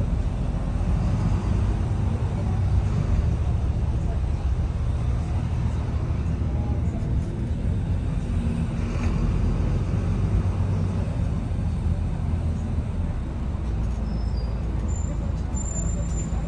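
Volvo B9TL double-decker bus's six-cylinder diesel engine running as the bus drives, with road noise, heard from inside the upper deck: a steady low drone.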